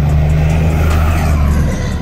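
Second-generation Ram dually pickup driving past under power: a loud, steady, deep engine and exhaust drone with road noise, cutting off abruptly near the end.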